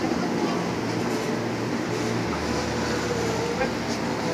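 JR 205 series electric commuter train standing at the platform with its onboard equipment running as a steady hum, over a background of voices. A deeper low hum joins about halfway through.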